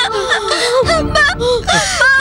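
A young child wailing and crying in distress, in high-pitched, breaking cries.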